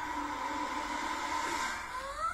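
Animated film trailer soundtrack playing: a steady held high tone over a hiss, with no speech.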